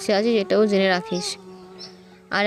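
A person's voice for about the first second, then a steady low hum that carries on alone.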